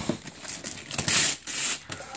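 Wrapping paper being torn and crinkled off a present in several short rips.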